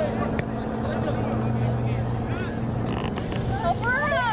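Sideline sound at a girls' youth soccer match: scattered calls from players and spectators over a steady low mechanical hum, with a loud high-pitched shout near the end.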